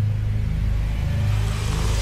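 Low, steady engine rumble heard inside a vehicle's cabin, with a soft hiss that swells near the end.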